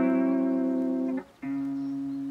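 Music: a guitar with effects playing held chords, one ringing for about a second, a brief break, then a lower chord held.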